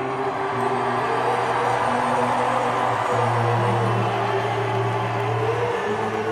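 Rock band playing live in a slow passage: long held bass notes that shift every couple of seconds under sustained electric guitar.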